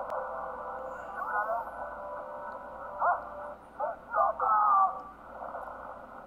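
The film's soundtrack playing thin and narrow-band, like through a small radio, with a few short bursts of voices about a second in, at three seconds and again near the five-second mark.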